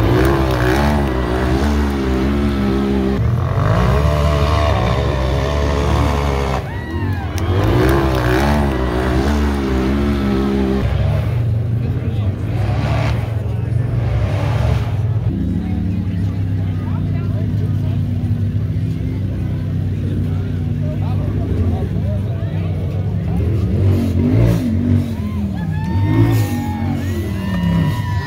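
Race UTV engines revving hard in two wavering bursts as a buggy climbs a rock face, then a steadier engine note running on.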